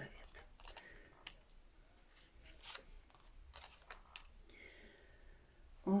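Tarot cards being drawn from a deck and laid down on a table: a few soft, scattered clicks and rustles of card handling.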